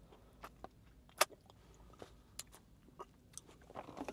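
Faint mouth and straw sounds from sipping a thick milkshake through a plastic straw: a scatter of small clicks, the sharpest one a little over a second in.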